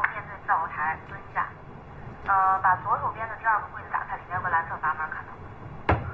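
Speech only: a voice giving instructions over the telephone, sounding thin and narrow as through a phone line.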